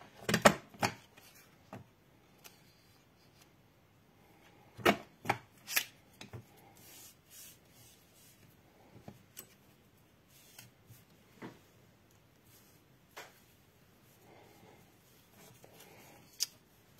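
Strips of green cardstock handled and slid on a craft work board: soft paper rustling and rubbing, with a few sharp clicks and taps. The clicks come in the first second and again about five to six seconds in.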